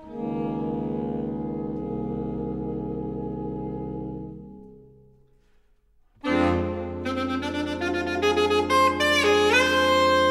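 A saxophone ensemble of soprano, alto, tenor and baritone saxophones holds a chord that fades away to near silence. About six seconds in the group comes back in louder, with a sustained low chord under moving upper lines and an upward bend in a top voice near the end.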